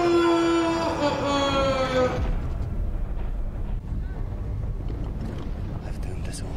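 A man's long, drawn-out scream of "No!" from the film soundtrack, falling slowly in pitch. It gives way about two seconds in to a steady low rumble.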